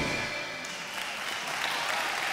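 Audience applauding as the band's last electric-guitar chord rings out and fades within the first half second.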